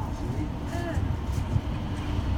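Tama Monorail car running along its guideway on rubber tyres, heard from inside the cabin as a steady low rumble, with a brief knock about a second and a half in.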